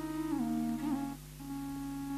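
Soft musical accompaniment of held, steady notes from one pitched instrument, stepping down through a few notes, breaking off briefly a little past a second in, then holding a single note.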